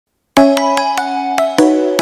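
Music: after a moment of silence, a quick run of bright struck notes, each ringing on, in a music-box or mallet-instrument sound.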